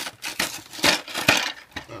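Clear plastic toy packaging crinkling and crackling as hands tear it open, in a series of sharp crackles.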